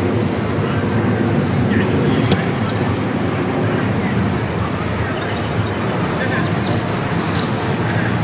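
Steady downtown street ambience: traffic hum mixed with the indistinct voices of people in an outdoor plaza.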